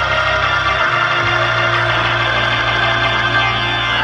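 Church music of sustained chords held steadily, with the low bass note changing about a second in.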